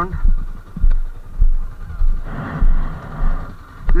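Low thumps of footsteps jolting a body-worn camera, about one every half-second at a walking pace, with a stretch of hissing noise for about a second in the second half.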